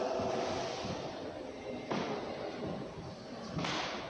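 Steady background noise of a large indoor hall, with two short knocks, one about two seconds in and one near the end.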